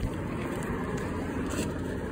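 Steady rumble and wind noise from riding a Lime electric scooter over pavement, with a small click at the start.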